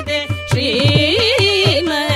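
Carnatic kriti sung by two women's voices with sliding, ornamented notes, accompanied by violin and steady mridangam drum strokes. The melody briefly thins just after the start, then returns.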